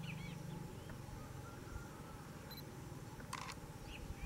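Faint, short, high bird chirps, a few near the start and more weakly later, over a low hum that fades under a second in. A short sharp click-like noise comes near the end.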